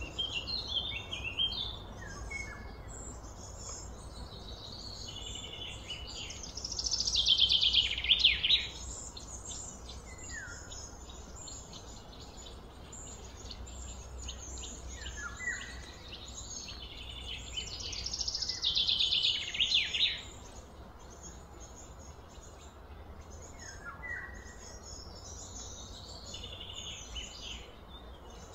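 Birds calling and singing, with short chirps throughout. Two louder bouts of rapid, high-pitched repeated notes come about seven and eighteen seconds in, each lasting a couple of seconds.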